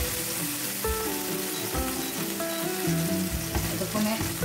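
Halloumi cheese slices frying in hot oil in a non-stick pan, giving a steady sizzle, with background music over it.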